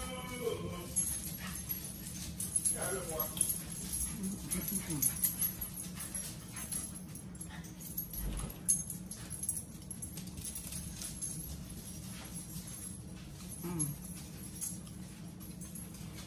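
A pet dog whining in a few short, falling whimpers, with close mouth sounds of chewing in between.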